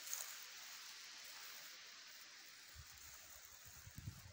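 Faint, steady outdoor hiss of wind over an open field, with low wind buffeting on the microphone starting near the end.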